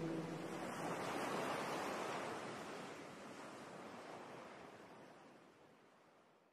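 Soft rushing ocean-surf ambience that swells once about a second in and then fades steadily out to nothing, the wave-sound layer closing a lo-fi track after the vocals have stopped.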